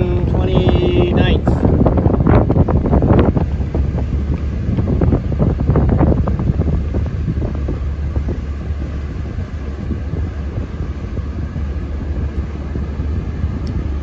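Wind buffeting the microphone over the steady low rumble of a small boat underway on open water, gustier in the first few seconds and easing after that.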